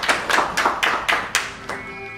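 A small audience applauding with dense, irregular hand claps that die away near the end.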